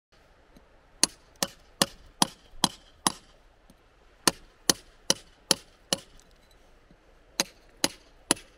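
Mallet striking a chisel held against rock, chiselling out a fossil: thirteen sharp, ringing blows in three runs of six, five and two, at about two and a half blows a second with short pauses between runs.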